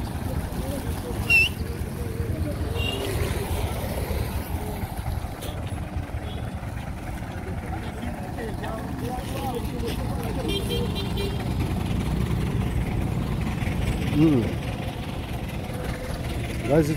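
Roadside street ambience: a steady low rumble of traffic from motorcycles and a minibus taxi on the road, with people's voices in the background.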